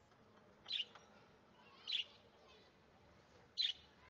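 A bird chirping three times, short separate chirps roughly a second or more apart.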